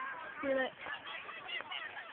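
A few short honking animal calls, with faint voices underneath.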